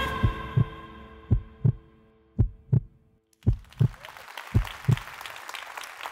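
Heartbeat sound effect: five lub-dub pairs of low thumps, about one pair a second, under a held musical chord that fades out about halfway through. A faint even hiss comes up in the second half.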